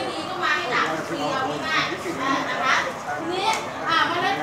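People talking, with several voices overlapping.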